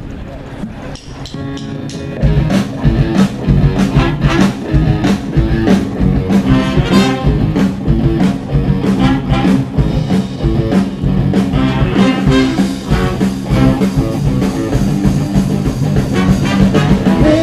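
Live rock band starting a song: a sparse, quieter opening, then the full band with a driving beat comes in about two seconds in.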